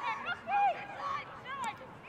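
Faint shouts and calls from players and spectators around a football pitch during play, a few short voices over low open-air ambience.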